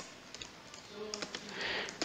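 Computer keyboard typing: a short run of quiet, scattered keystrokes.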